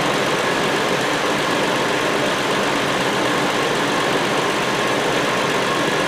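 Hyundai Sonata 3.3-litre V6 engine idling steadily.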